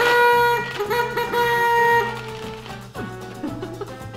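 Party blower (paper party horn) blown twice: a short toot, then a longer one of about a second and a half, each a single held reedy tone.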